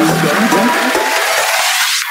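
Vinahouse dance remix in a build-up. The kick drum and bass drop away about half a second in, and a rising filter sweep thins the music out from the bottom up over a rushing noise riser.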